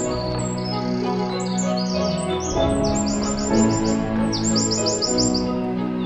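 Calm background music with held chords, overlaid with bird song: high chirps throughout, with two quick runs of about seven repeated notes in the second half.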